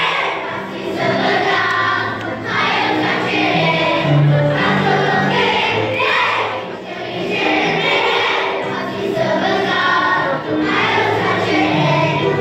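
Children's choir singing a song together, with held low notes sounding beneath the voices.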